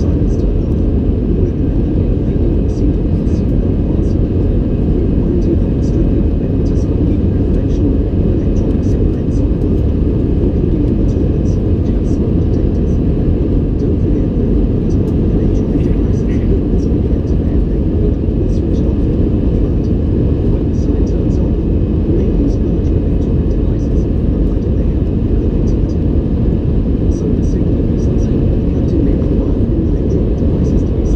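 Airliner cabin noise during the climb after take-off: the jet engines and rushing air make a dense, steady low rumble, heard from a window seat inside the cabin. Faint light ticks come and go over it.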